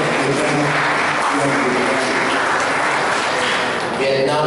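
An audience applauding, dying away near the end, with a man's voice faintly under it.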